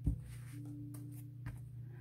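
Quiet background music: a low steady drone with one note held for under a second, about half a second in. A light tap sounds about one and a half seconds in.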